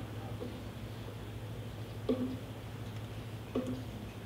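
Quiet room tone in a pause between speech: a steady low hum, broken by two brief faint sounds about two and three and a half seconds in.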